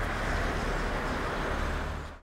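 Steady outdoor street ambience: a continuous hum of distant road traffic.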